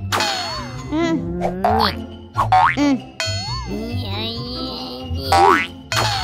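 Cartoon sound effects over children's background music: springy boings and several quick rising whistle-like glides, the sharpest near the end.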